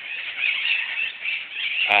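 A flock of green parrots screeching and chattering in the trees overhead, a constant racket of many overlapping shrill calls.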